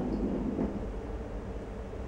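A metal dumbbell rolled and pushed across a tile floor by hand, a low rumble for the first half second or so that then dies down into a steady low hum.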